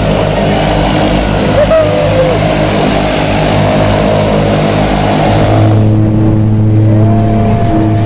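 Propeller aircraft engine running with a steady drone. About two-thirds of the way through, the sound changes suddenly to a deeper, duller drone with the treble cut, as heard from inside the plane's cabin.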